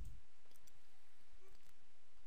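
A few faint, short clicks over a low, steady microphone hum.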